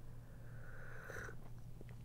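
A faint sip of hot coffee drawn from a cup: a soft slurping hiss lasting about a second.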